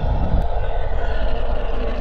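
A loud rumbling, roaring sound effect: a deep rumble under a hissing upper layer, whose lowest part thins out about half a second in while a steady mid-pitched roar carries on.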